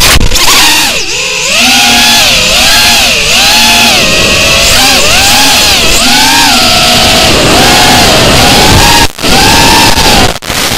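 FPV racing quadcopter's electric motors and propellers heard from its onboard camera: a loud whine whose pitch keeps rising and falling with the throttle, over a rush of prop and wind noise, dropping out briefly near the end.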